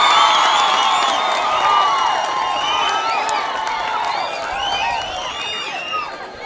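Crowd cheering with many high-pitched whoops and some clapping, gradually dying down.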